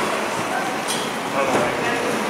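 Indistinct voices of several people talking over one another in a large, echoing lobby, with a short click about a second in.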